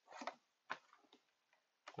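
Near silence with a faint short noise just after the start and a single faint click about two-thirds of a second in, the click of computer input during editing.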